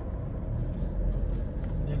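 A car's steady low rumble of engine and tyres, heard from inside the cabin as it drives slowly along an unpaved dirt road.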